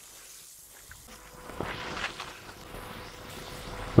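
Ladle stirring and scraping through a thick, simmering sauce in a pot, quiet at first and becoming more audible about a second in.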